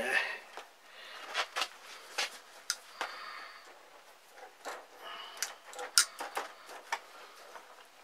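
Galvanised chicken wire being bent and twisted around itself by hand, giving irregular light metallic clicks, rattles and scrapes.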